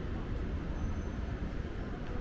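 Steady low rumble of city background noise, with no single sound standing out.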